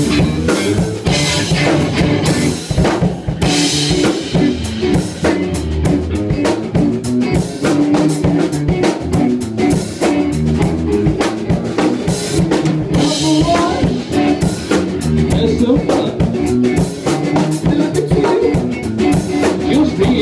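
Funk rock trio playing live with no singing: a Gretsch drum kit with rimshots and kick drum, an electric Jazz Bass line and electric guitar, with cymbal crashes a few times.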